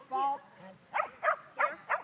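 A dog barking in quick, sharp repeated barks, about three a second in the second half, after one short call near the start.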